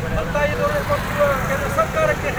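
Protesters shouting slogans in Kannada, over a steady low rumble.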